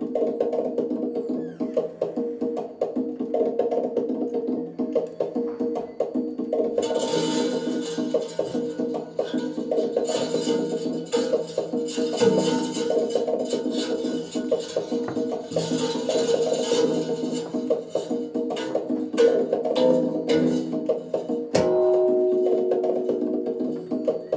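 Improvised experimental live music: a dense layer of sustained, overlapping tones with rapid clicking and tapping throughout. Brighter hissing noise joins twice, about seven and about sixteen seconds in.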